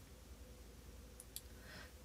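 Near silence: room tone with a faint steady hum, and two faint clicks a little over a second in.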